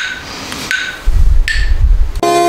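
Metronome app ticking steadily, a short ringing tick about every three-quarters of a second. From about halfway, a loud low rumble of handling noise as a hand reaches for the camera.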